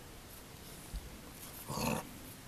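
A short dog vocalisation near the end from a playing dog and puppy, after a soft low thump about a second in.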